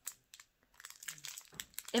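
Lollipop wrapper crinkling and crackling in a quick, uneven run through the second half as it is picked at and tugged. The wrapper is stubbornly hard to open.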